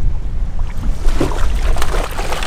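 Wind buffeting the microphone over a choppy sea, with water washing against the boat's hull. Near the end a hooked blackfin tuna splashes at the surface beside the boat.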